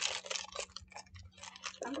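Crinkling of a plastic snack bag being handled: a rapid run of irregular crackles.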